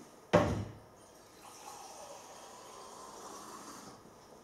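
A sharp knock about a third of a second in, then water running from a lab tap into a glass beaker for about two and a half seconds, stopping just before the end.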